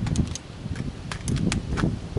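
Light clicks and clacks of an AR-style rifle being handled as its magazine is pulled out, about nine sharp clicks spread over two seconds, over a low rumble of wind on the microphone.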